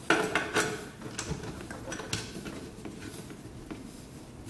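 A round metal multi-pin cable connector clinking and scraping against its socket as it is fitted into the control box: a few sharp metallic clicks in the first second, then lighter ticks.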